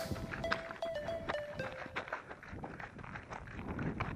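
Running footsteps on a loose, stony mountain trail: irregular crunches and knocks of shoes landing on rock and gravel.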